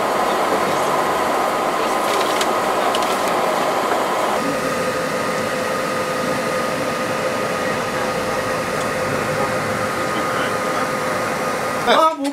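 Steady road noise of a moving vehicle, a rumble and hiss with faint steady tones, which shifts in tone about four seconds in.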